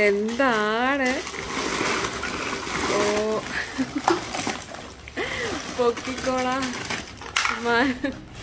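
Thin plastic shopping bag crinkling and rustling as it is lifted and its contents are tipped out, between short, drawn-out exclamations in a child's voice.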